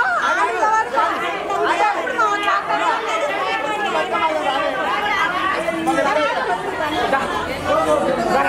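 Lively crowd chatter: many women's voices talking and calling out at once, overlapping continuously.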